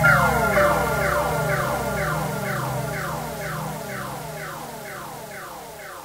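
Electronic intro-jingle sound effect: a quick series of falling synth tones, repeated about every third of a second and gradually fading out.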